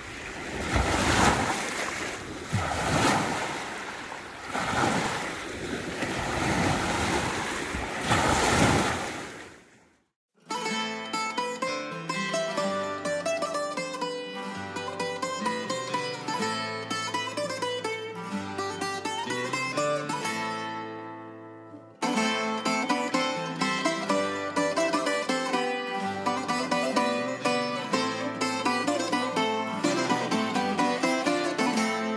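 Small lake waves washing up on the shore, a swell about every two seconds, for the first ten seconds. Then background music with a quick plucked-string melody, which fades out briefly about two-thirds through and starts again.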